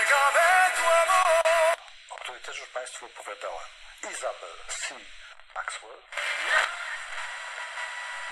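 Vigurtime VT-16 kit radio playing FM broadcasts through its small speakers as the tuning knob is swept up the band. About two seconds of singing with music cut off abruptly, then snatches of talk from one station after another, and a noisier stretch near the end. The sound is thin, with no bass.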